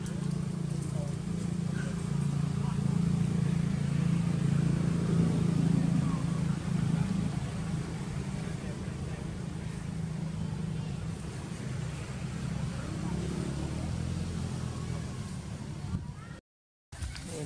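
A motor vehicle engine running steadily, a continuous low hum that grows a little louder for a few seconds near the start and then eases off.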